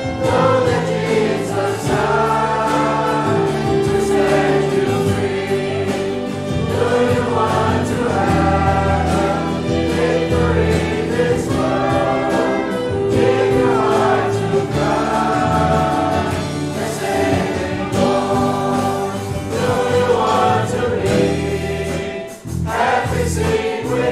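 Group of voices singing a gospel hymn chorus together over instrumental accompaniment with steady low bass notes.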